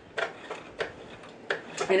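Sewing machine mechanism turned by hand at the hand wheel with the motor off, working freshly applied drops of oil into the moving joints of the needle drive: a few separate light clicks.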